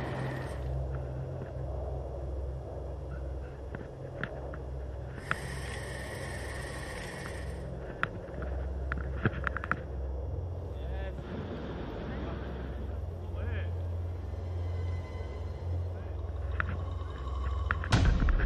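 Wind rumbling steadily on a body-worn camera's microphone at altitude, with scattered small clicks and taps.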